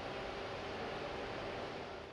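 Steady, low background noise of a bus depot hall with a faint hum, no distinct events.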